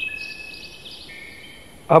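Night insects such as crickets calling in thin, steady high-pitched tones over faint outdoor background noise. A man's voice begins right at the end.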